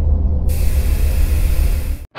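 Logo-sting sound effect: a deep rumble, with a loud hiss that comes in suddenly about half a second in; both cut off abruptly together at the end.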